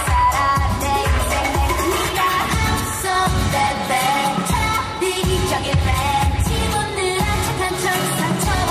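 K-pop song playing loud, with singing over a heavy, steady beat.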